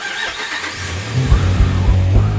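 A pickup truck's engine starting with a sudden burst and running on, with heavy rock music coming in over it about a second in, carrying a pounding low beat.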